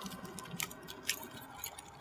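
A few faint clicks and light handling sounds as the lid of a bear canister is worked open by hand.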